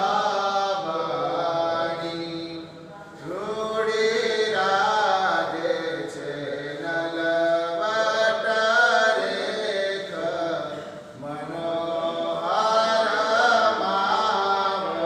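A man singing a Gujarati devotional kirtan in long, drawn-out phrases, breaking off briefly about three seconds in and again near eleven seconds.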